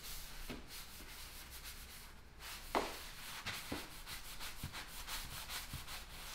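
Doodlebug scrubbing pad on a pole rubbed back and forth over wet, pre-sprayed ceramic tile and grout, a faint repeated scrubbing in short strokes as the edges are agitated. There is one brief louder squeak about three seconds in.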